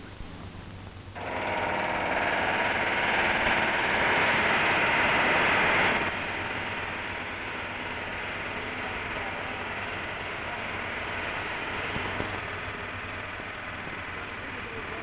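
Pneumatic rivet gun hammering a rivet into a steel building column: a loud, dense rattle that starts about a second in and continues more quietly after about six seconds.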